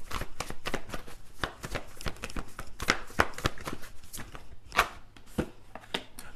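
Tarot cards being shuffled by hand: an irregular run of quick papery flicks and snaps.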